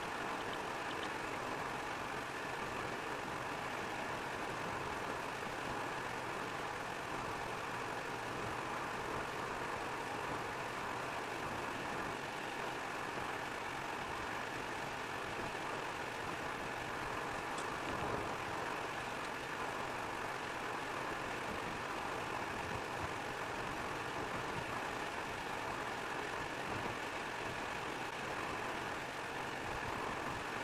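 Steady driving noise inside a car cabin cruising at about 90 km/h on wet asphalt: tyre hiss and engine running at a constant pace, with no change in speed.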